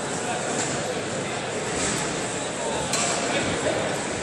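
Echoing background noise of a large sports hall: indistinct voices and chatter, with a few faint knocks.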